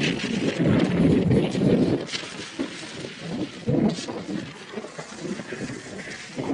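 Wind buffeting the microphone of a camera mounted on a moving car's roof, with tyre and road noise underneath. It is gustier and louder for the first two seconds, then settles lower.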